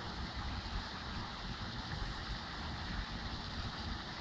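Wind buffeting the microphone, a steady, unbroken low rumble of outdoor air noise.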